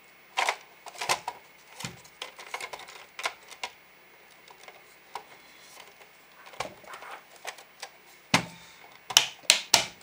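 Plastic parts of a wake-up light's housing knocking and clicking as they are handled and fitted together, in scattered irregular clicks with a quick run of sharper clicks near the end.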